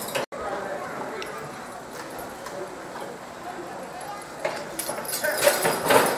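Draft horses' hooves knocking on a dirt track and harness gear clinking as a team is hitched to a weighted sled and pulls, with people's voices near the end. The sound drops out for an instant just after the start.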